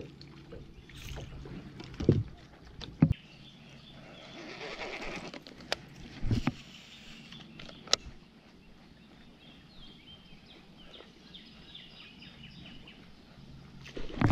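Handling and casting sounds on a fishing boat: several sharp knocks on the deck, a low steady hum in the first few seconds and again near the end, a soft whir of line going out about four to six seconds in, and faint rapid ticking of a reel being wound near the end.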